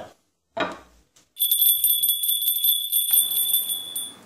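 Jingle bells jangling for about two and a half seconds, starting about a second and a half in: a sound effect laid over a scene transition.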